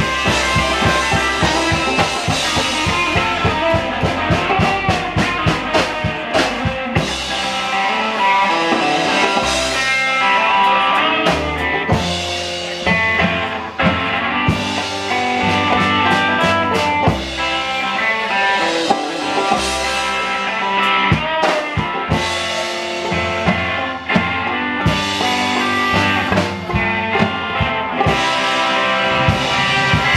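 Live band playing an instrumental stretch: drum kit, electric guitar, upright bass and banjo, with a steady drum beat.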